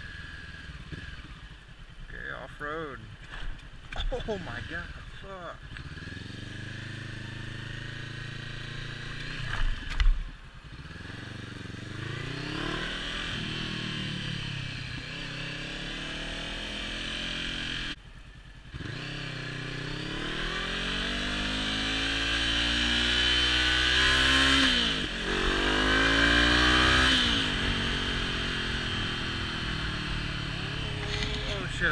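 Honda CB500F's parallel-twin engine revving and pulling through the gears as the motorcycle accelerates, its pitch climbing and dropping back at two gear changes in the second half, with wind on the helmet camera's microphone rising with speed. A brief loud thump comes about ten seconds in.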